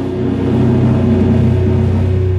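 Live jazz-fusion band holding a long, steady low chord, with a rumbling drum roll underneath.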